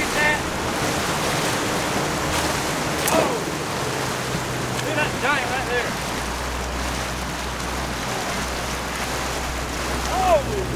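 Boat motor running steadily under wind and water noise, its low hum growing stronger about four seconds in. A few brief high calls break through, near the start and again around the middle.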